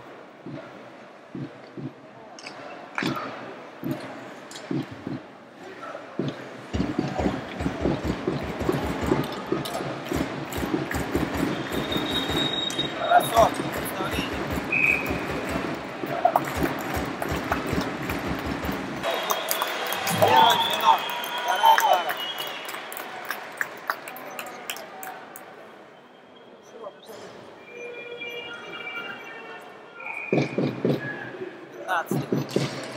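Ice hockey arena crowd noise, with a fast, even beat of low thumps from about seven to nineteen seconds in, then whistles and a burst of crowd noise around twenty seconds in.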